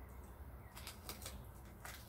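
Crispy fried-chicken breading crunching as it is bitten and chewed, a quick run of crackles from a little under a second in until near the end.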